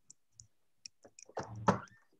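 A few scattered light clicks and knocks from a computer or phone being handled as it is carried to another room. Near the end comes a brief, louder voice sound.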